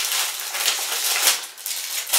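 Plastic packaging crinkling and rustling in the hands, a dense run of quick crackles, as a plastic mailer bag is opened and a plastic-wrapped item is pulled out.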